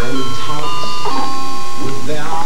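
Electronic baby toy playing a tune of steady beeping notes that step from pitch to pitch.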